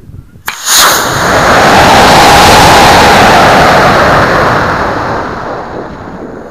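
Model rocket motor igniting about half a second in with a sharp crack, then a loud, steady rushing roar heard from on board the climbing rocket, fading over the last second or so.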